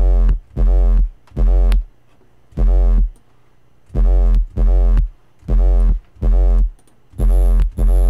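Heavily distorted synth sub-bass: a Serum sine-wave patch through Diode 2 distortion and a downsampling Redux effect. It plays a hard trap pattern of short, heavy bass notes with gaps between them, each note arching in pitch. On the last notes a thin, high-pitched digital fizz from the downsampling rides on top.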